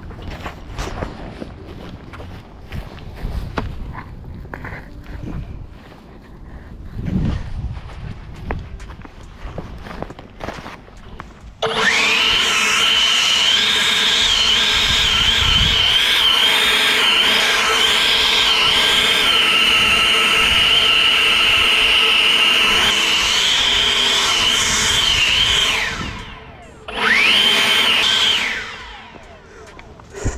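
EGO Power+ 650 CFM 56-volt battery leaf blower switched on at full power about a third of the way in, running with a steady high whine for about fourteen seconds, spinning down, then given one short burst and spinning down again. Before it starts there are only quiet thumps and handling noise.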